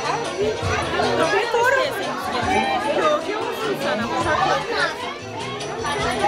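Several people talking over one another, with music playing underneath.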